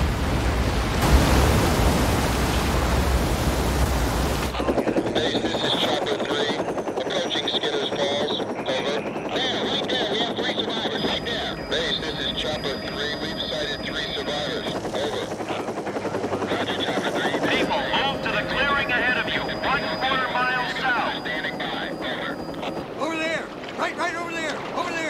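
Rushing whitewater rapids for about the first five seconds, cut off suddenly for a quieter scene carrying a steady high-pitched hiss, with wavering pitched calls a few seconds before the end.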